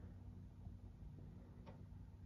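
Near silence: room tone with a faint steady low hum and a couple of faint ticks near the end.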